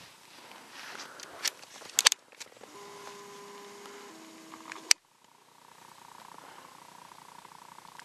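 A few handling clicks, then the steady whine of a camcorder's zoom motor, which steps down in pitch once as the lens zooms in. It is cut off by a click and followed by a fainter steady hum.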